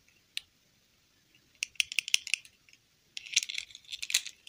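Small plastic doll and its plastic dress being handled and fitted together: light plastic clicks and rattles, one click near the start, then two quick flurries about a second and a half in and again near the end.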